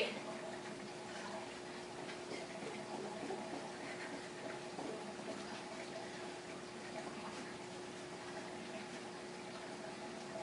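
Aquarium filter running: a faint steady trickle of water over a low, even hum.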